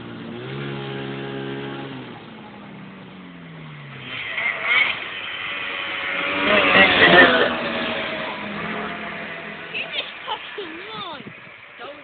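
Ski-Doo MXZ snowmobile engine coming along the trail, its pitch dropping about three seconds in, then at its loudest as it passes close by around seven seconds in before fading.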